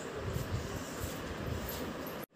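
Wind rumbling on a phone microphone outdoors: a steady hiss with irregular low buffeting swells.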